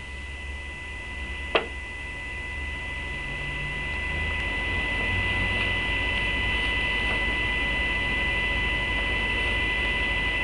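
Steady electrical hum with a thin high whine and hiss, slowly growing louder, and a single click about one and a half seconds in.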